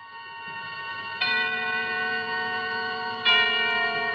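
Opening theme music of an old-time radio drama: held chords that fade in, with a louder chord added just over a second in and another near the end.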